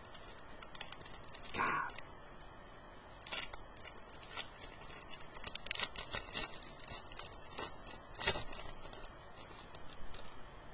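Baseball card packs and cards being handled: foil pack wrappers crinkling and tearing, with a string of small irregular clicks and rustles as the cards are gripped and slid.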